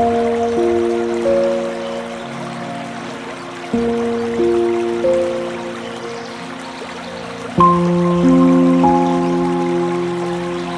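Slow, soft background music: sustained chords that start afresh about every four seconds and fade away, over a faint steady hiss like flowing water.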